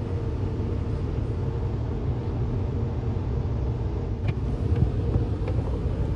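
Automatic car wash running, heard from inside the car's cabin while foam and water wash over the windshield: a steady low rumble with a few faint ticks in the second half.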